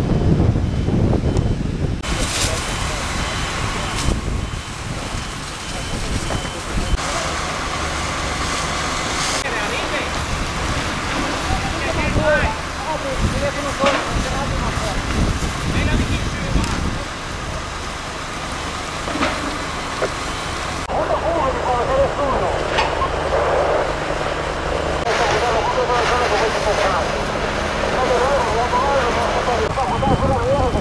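Firefighting at a burning building: fire engines' pumps running steadily under the hiss of hose water and the crackle of the fire, with voices calling in the background. It comes in several clips that change abruptly.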